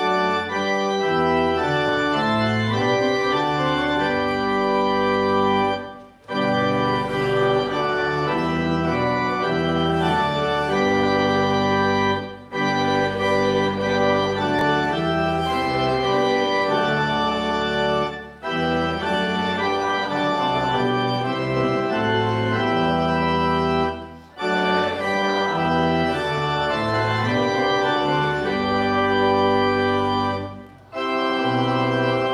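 Church organ playing a slow, hymn-like piece in held chords, with a short break about every six seconds between phrases.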